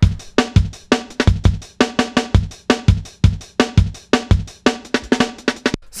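Chopped sampled drum break playing back as a fast jungle breakbeat, with punchy kick and snare hits in a busy, syncopated pattern.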